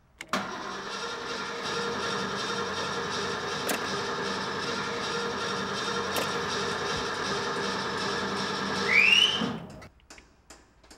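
An old car's engine starts and runs steadily on a worn-out carburettor, which the mechanic calls "beat to hell". Near the end it revs with a rising whine, then cuts off suddenly.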